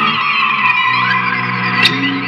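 Improvised noise music from electric guitars run through effects pedals: a dense distorted wash with high squealing tones that glide up and down over a low sustained drone, which changes pitch about halfway through. A sharp attack cuts in near the end.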